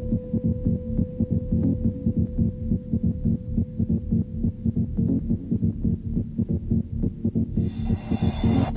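Late-1990s Eurodance mix in a stripped-down, muffled passage: only a pulsing kick drum and bass with a held note, the treble cut away. Near the end the highs come back in and the full bright dance mix returns.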